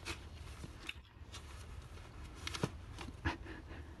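Faint scattered taps and rustles of paper being handled on a tabletop, over a low steady hum.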